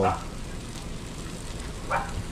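Chicken sizzling over hot charcoal on an open kamado-style grill, a steady hiss.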